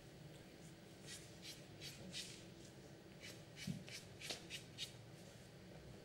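Billiard chalk scraped on a cue tip in a run of short, quick strokes from about a second in until about five seconds in, with a soft low knock midway.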